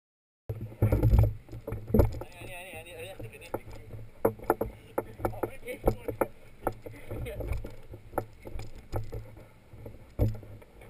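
Wind rumbling on an action camera's microphone, with many sharp knocks and taps and a boy's voice briefly. It starts suddenly about half a second in.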